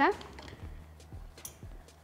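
Faint, light taps and clicks of lab containers being handled on a table as a powder is tipped into a glass flask.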